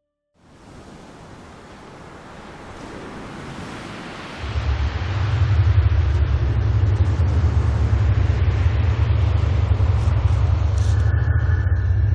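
Storm sound effects: a wash of wind and surf noise fades in and swells, joined about four seconds in by a loud, steady deep rumble.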